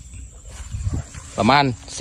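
A man's voice speaking Thai briefly, about a second and a half in, over a low steady rumble.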